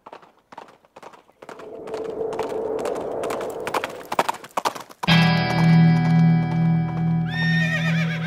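Horse sound effects: hooves clip-clopping for the first few seconds, then a held musical chord comes in suddenly about five seconds in, with a horse whinnying over it near the end.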